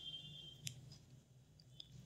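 Near silence: room tone with a faint click about two-thirds of a second in and another, fainter one just before the end.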